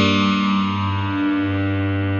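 Korg modwave wavetable synthesizer holding a sustained low note rich in overtones. The brighter upper overtones slowly fade as the tone shifts, the timbre moving as a looped envelope sweeps each oscillator's wavetable start position, with a touch of FM from oscillator 1 on oscillator 2.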